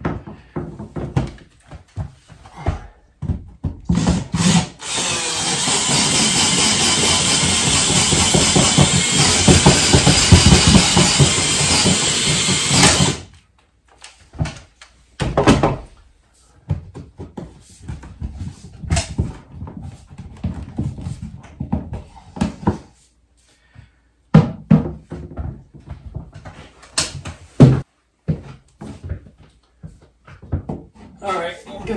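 Power drill running steadily for about eight seconds, widening a hole that is too small so a pipe will fit through it. It is followed by scattered knocks and clatter.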